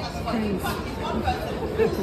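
Indistinct chatter of several people's voices talking over one another.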